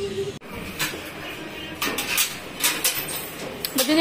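Sharp metallic clinks and clatters from a stainless steel dog cage and its steel food bowl, several separate knocks spread over a few seconds.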